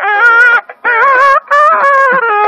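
Nadaswaram, the South Indian double-reed wind instrument, playing loud Carnatic melody in raga Devagandhari: ornamented notes sliding between pitches, broken twice by short pauses for breath.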